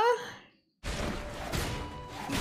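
A woman's wavering, drawn-out vocal fades out into a moment of dead silence. Less than a second in, anime soundtrack audio cuts in: a dense, noisy run of action sound effects with music.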